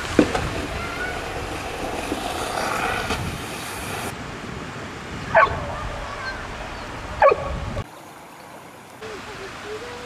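Water rushing down a concrete spillway. Then a dog barks twice, sharply, about two seconds apart.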